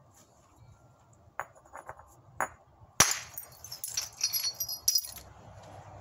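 Flintknapping by hard-hammer percussion: a few light taps of a hammerstone on a stone core, then one sharp strike about three seconds in that knocks off a large flake, followed by about two seconds of stone flakes clinking and clattering. It is an early reduction strike, taking off a lot of mass quickly to set up the bifacial plane.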